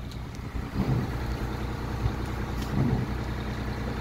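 Engine of a boatyard lifting hoist running steadily with a low hum while it holds a boat in its slings.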